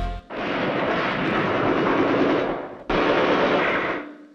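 Loud recorded battle sound effect of shelling: a sustained blast of noise that starts suddenly just after the music cuts out and runs over two seconds, breaks off, then a second shorter blast about three seconds in.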